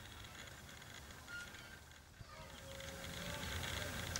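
Faint outdoor ambience: a low steady rumble with a brief, faint high chirp about a second and a half in, growing slightly louder near the end.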